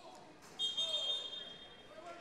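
A referee's whistle in the gym: one steady, high blast lasting about a second, over faint crowd voices.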